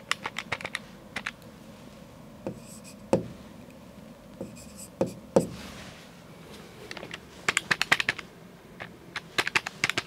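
Keys of a handheld electronic calculator being pressed in quick runs of clicks, at the start, and twice more near the end, while subtraction figures are worked out. A few duller knocks come in between.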